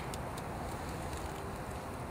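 Steady low outdoor background rumble, with a few faint light clicks in the first half second.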